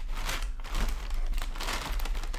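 White packing paper crinkling and rustling as it is pulled apart and crumpled by hand, in a run of irregular crackles.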